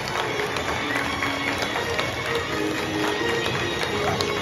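Music with held melody notes, with scattered light taps over it.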